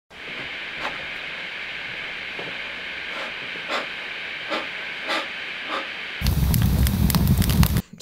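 Fire crackling: a steady hiss with scattered sharp pops, then a much louder rush of flame for about a second and a half near the end that cuts off suddenly.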